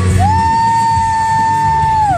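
Loud rock music from the stage sound system, dominated by one long held high note that slides up into pitch just after the start and drops away at the end, over a continuing low bass and beat.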